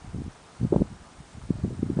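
Wind buffeting the microphone in irregular low gusts, the strongest about a third of the way in.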